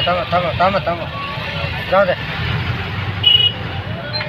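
Voices of a crowd of bystanders in the first half, over a steady low rumble of road traffic. A short high beep sounds about three seconds in.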